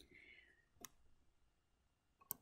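Near silence: quiet room tone, with one faint short click a little under a second in.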